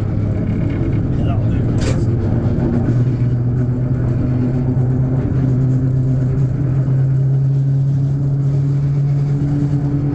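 Locomotive diesel engine running as the locomotive moves slowly, its note rising a little about three seconds in and then holding steady. A single sharp clank about two seconds in.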